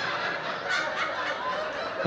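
Audience laughing, a mass of overlapping laughs.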